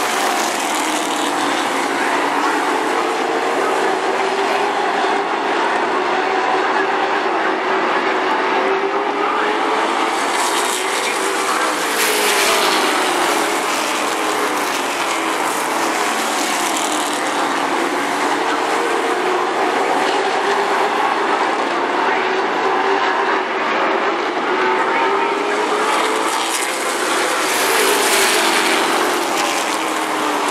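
A pack of late model stock cars racing, many V8 engines running at once, their pitch rising and falling as the cars lift into the turns and accelerate out. The sound swells about twelve seconds in and again near the end as the pack comes by.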